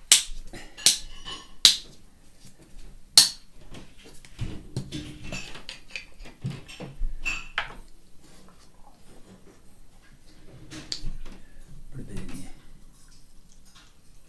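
A bottle of wood stain being shaken and handled: four sharp clicks in the first three seconds or so, then quieter scattered knocks and rustles as it is handled and opened.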